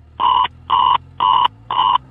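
Fire dispatch alert tones: four short, evenly spaced beeps, about two a second, over a steady low hum from the radio recording.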